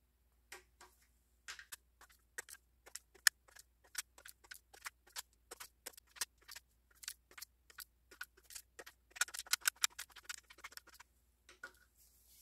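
Inch-pound torque wrench ratcheting on the camshaft bearing cap nuts of a BMW M52TU/M54 six-cylinder head: a long run of quiet, sharp clicks, several a second, with a quicker flurry near the end. The cam caps are being torqued down to 11 ft-lb (132 in-lb).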